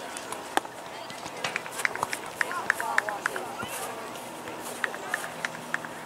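Indistinct, distant voices of players and spectators on an outdoor soccer field, with a cluster of short sharp sounds a second or two in.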